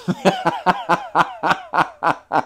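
A man laughing heartily: a run of short, rhythmic bursts of laughter, about four a second.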